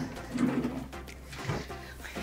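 A short low hum from a woman's voice, then a soft knock about one and a half seconds in as a wooden desk drawer is pushed shut.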